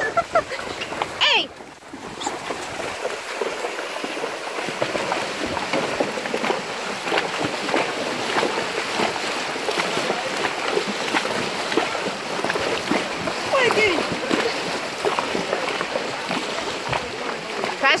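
Horses and people on foot wading through a shallow, muddy river: a continuous mass of splashing from hooves and legs churning the water, building up about two seconds in. Short voice calls cut through it about a second in and again near fourteen seconds.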